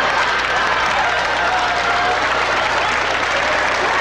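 Studio audience applauding: a steady, dense wash of clapping, in response to a punchline.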